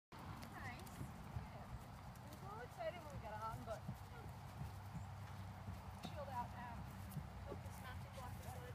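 Hoofbeats of a paint gelding under saddle moving over grass, soft irregular thuds, with faint voices behind.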